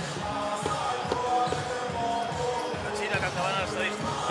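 A basketball bouncing on a hardwood court, a knock every half second or so, over music from the arena's sound system, with a voice briefly near the end.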